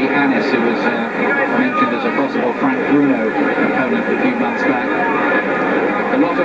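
Speech: voices talking continuously over a steady background din.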